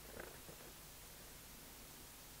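Near silence: room tone with a low hum and a faint rustle of paper sheets being handled, twice early on.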